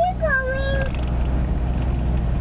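A child's high, drawn-out whining call, held for under a second near the start, over the steady low rumble of a car driving.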